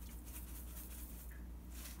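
Quiet room tone: a steady low hum under faint background noise.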